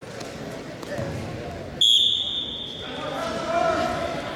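Referee's whistle, one sharp blast about two seconds in, starting the wrestling bout. Voices in the gym follow it.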